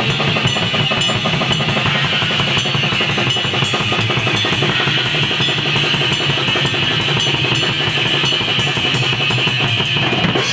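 Black death metal band playing loud and fast: a drum kit with rapid kick drum, snare and cymbal strikes under an amplified electric guitar.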